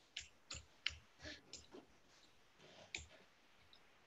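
A string of faint, irregular computer clicks as the presentation slides are clicked through.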